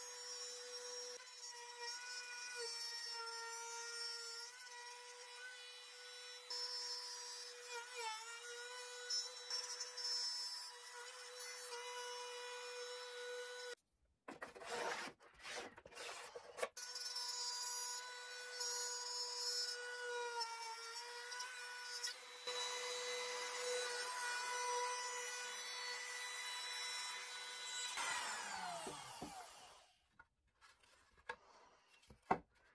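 Compact trim router running at high speed, milling a slot into plywood; its steady whine dips slightly in pitch when the bit loads in the cut. The sound breaks off for a few seconds about halfway, resumes, and near the end the router is switched off and winds down with a falling whine.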